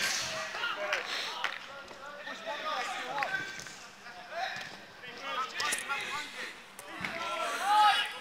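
Indistinct shouts of players calling out during a five-a-side football game, with several sharp thuds of the football, the loudest near the end.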